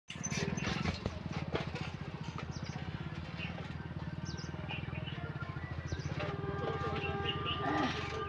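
A low, steady engine throb with fast even pulses runs throughout. Birds chirp now and then. Over the last two seconds a distant electric locomotive's horn sounds a steady note as the train approaches.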